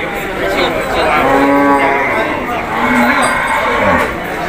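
A cow mooing: one long moo beginning about a second in, then a shorter, lower moo about three seconds in.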